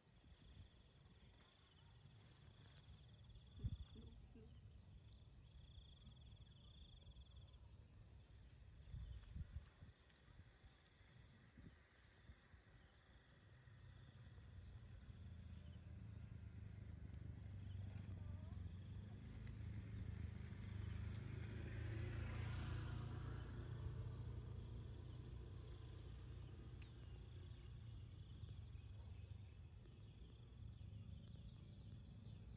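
Faint outdoor ambience: a high insect trill comes and goes early on, with a couple of soft knocks. A low rumble then swells to its loudest a little past the middle and slowly eases off.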